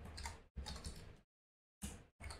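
Computer keyboard typing: a few faint keystrokes, a short pause, then one more keystroke near the end.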